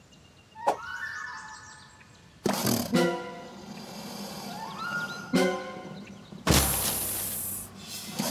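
Cartoon soundtrack: light music with sound effects, including a couple of rising pitch glides and several short noisy swishes, the longest and loudest lasting about a second near the end.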